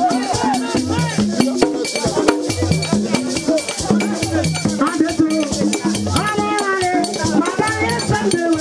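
Vodou ceremonial music: drums and rattles keep a fast, steady beat while voices sing a chant over it.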